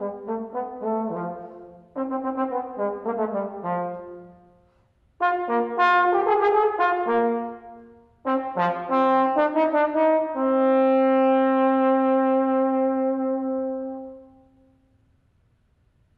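Solo trombone playing unaccompanied: three phrases of quick runs of notes with short breaks between them, ending on one long held note that fades out shortly before the end. This is the closing note of the piece.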